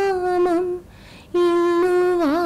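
A woman singing an unaccompanied prayer song solo, holding long notes with small wavering ornaments, with a brief break about a second in.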